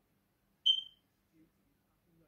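A single short, high-pitched beep that dies away quickly, against near silence.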